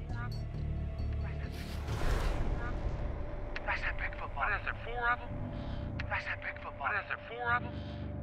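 Men's voices from a recorded conversation playing over a phone's speaker, starting about three and a half seconds in, with a thin steady hum under them. About two seconds in there is a brief rushing noise.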